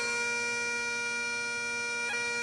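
Bagpipes playing: one long chanter note held over the steady drone.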